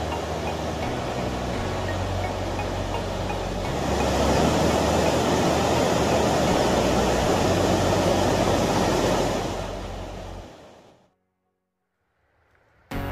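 Water rushing over a low river weir, a steady hiss that swells about four seconds in, mixed with background music with a steady bass line; both fade out to silence near the end.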